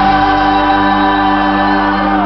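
Live rock band playing loudly, with several voices holding a long sustained harmony chord over electric guitar and the band.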